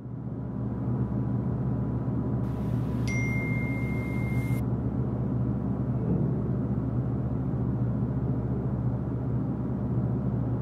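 Steady low musical drone, fading in at the start and holding level, with a faint high tone for about a second and a half about three seconds in.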